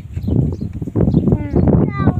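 A woman talking, close to the microphone, over a low rumble.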